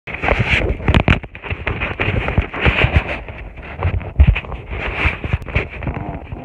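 Handling noise from a phone being moved and held: loud, uneven rubbing and rustling against the microphone, with many dull thumps and knocks.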